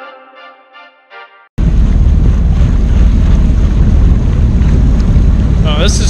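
Background music for about the first second and a half, then a sudden cut to a jet ski running across open water, loud, with heavy wind buffeting the microphone. A voice starts just before the end.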